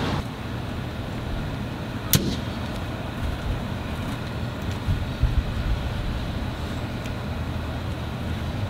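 A vehicle engine idling with a steady low hum, a sharp click about two seconds in and a few soft knocks around the middle.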